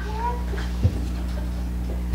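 A short, high vocal sound that glides up and levels off early on, then a brief soft thump a little before one second in, over a steady low electrical hum in the room.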